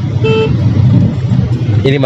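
Steady low engine and road rumble inside a moving car, with one short horn-like beep about a quarter second in.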